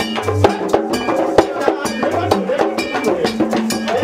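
Lively percussion music: drums under a steady clanking bell beat like a cowbell, with voices singing over it.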